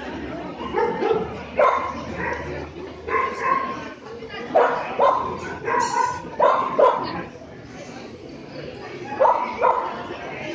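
A dog barking in short, sharp yips, about ten of them in clusters, with a lull between about seven and nine seconds in.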